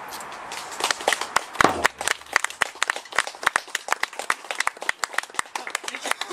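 Small audience clapping by hand, the dense irregular claps starting about a second in, with one louder thump shortly after.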